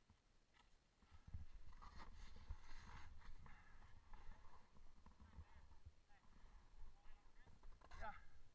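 Faint, muffled hiss of a snowboard sliding over snow with low wind rumble on a helmet camera, starting about a second in.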